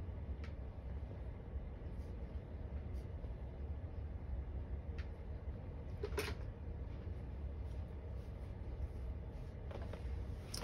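Quiet room tone with a steady low hum, broken by a few faint clicks and a somewhat louder knock about six seconds in.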